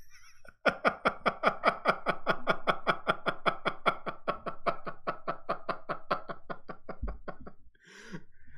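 A man laughing hard: after a brief hush, a long unbroken run of quick pitched laugh pulses, about six a second, that slows and fades near the end.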